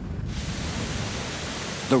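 Rushing floodwater of a swollen, muddy river: a steady, dense hiss that comes in abruptly just after the start.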